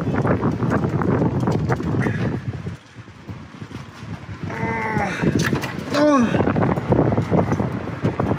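A man making short strained grunts and groans with effort as he works a wrench on a seized temperature sensor through a screw extractor. Short clicks and scrapes of the tool against the engine come mostly in the first few seconds.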